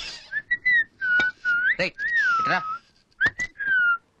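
A person whistling a short tune of gliding notes in several phrases, with a few sharp clicks between them.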